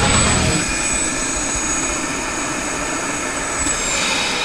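Eurocopter AS365N Dauphin helicopter running, heard from the open cabin door: a loud, steady turbine and rotor rush with a thin, high whine over it.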